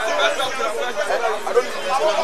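Several people talking at once: a steady babble of overlapping voices from bystanders, with no single clear speaker.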